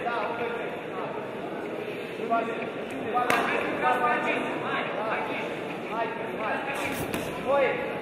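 Short shouted calls from voices around a kickboxing ring, echoing in a large hall, with a sharp knock about three seconds in and another near seven seconds.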